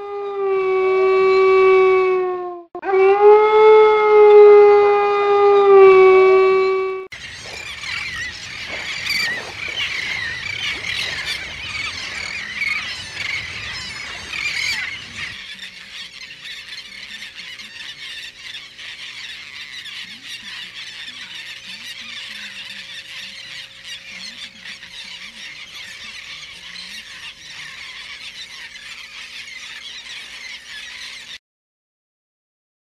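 A wolf howling twice, long drawn-out howls at a nearly steady pitch, the second longer. Then a dense, high, chattering wash of sound that carries on quieter and steadier through the second half.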